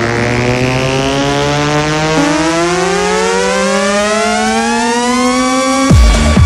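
Electronic dance music build-up: a held synthesizer sound whose many notes all glide slowly upward together over a steady low tone, with no beat, until the drums come back in right at the end.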